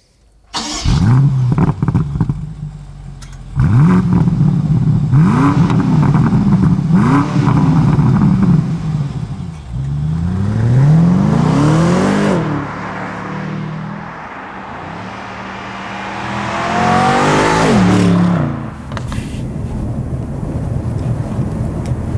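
BMW M850i Convertible's twin-turbo V8 accelerating hard through the gears, its note climbing and dropping back at each upshift. Twice the car runs past, louder, and its pitch falls steeply as it goes by.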